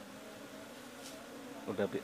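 Asian honeybees (Apis cerana) buzzing, a faint steady hum.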